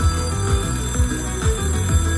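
Ultimate Fire Link Cash Falls slot machine playing its electronic bonus-round music, with a steady low beat about twice a second and bell-like ringing tones.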